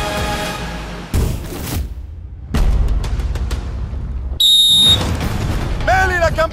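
Broadcast transition audio: background music fades out, then two deep boom hits land about one and two and a half seconds in, and a short high electronic tone sounds about four and a half seconds in.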